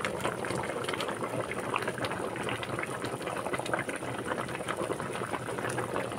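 A pot of chicken and vegetable soup boiling steadily: a dense, even patter of small bubbles popping at the surface of the broth.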